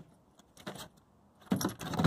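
Dog's collar tags jingling briefly about one and a half seconds in, with a few faint clicks before it.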